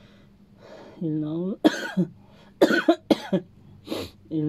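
A man coughing about four times in quick, short bursts over the last two seconds, after a brief voiced sound from the throat.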